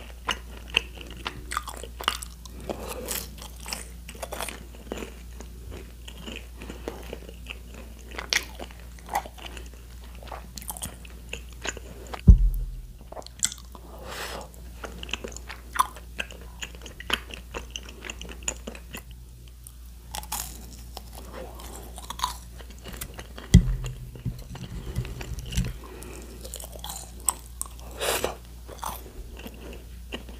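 Close-miked chewing and biting of tteokbokki and fried snacks: wet clicks and crisp crunches in quick irregular succession over a steady low hum. Two loud low thumps land about twelve and twenty-four seconds in.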